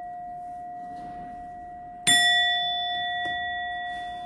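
A metal bell-like chime rings steadily, then is struck once about two seconds in with a bright, clear ring that slowly fades.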